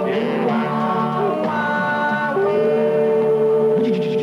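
Oldies record with a vocal group singing harmonies, heard over an AM radio broadcast, with one long held note through the second half.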